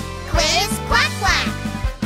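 Cartoon-style duck quacks, about three of them, over children's-song backing music.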